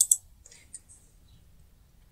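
Two quick computer-mouse clicks at the start, a fraction of a second apart, then near quiet.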